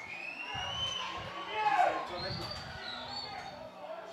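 Open-air sound of a football pitch: players' and onlookers' voices calling out at a distance, with one louder falling shout about one and three-quarter seconds in.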